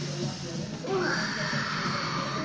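A person making a long, raspy breathing sound that starts about a second in, acting out choking on smoke, over steady background music.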